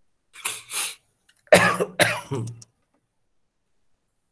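A man coughing: two short breathy coughs, then about a second later two louder, fuller coughs.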